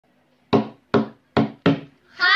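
Four sharp knocks in a quick, slightly uneven beat: a hand slapping a tabletop.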